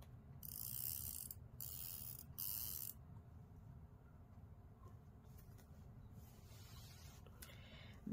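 A fabric marking pen drawn along a clear ruler across bag strapping: three short scratching strokes in the first three seconds, then only a faint low room hum.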